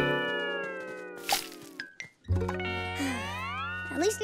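Cartoon music cue with comic sound effects: a held chord slides slowly downward for about two seconds, a short boing-like blip follows, and after a brief break a low held note sounds under tones that slide upward.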